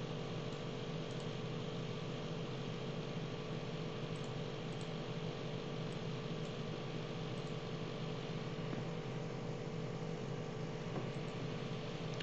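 Steady background hum and hiss with a few faint steady tones running through it: room tone picked up by the microphone between spoken remarks.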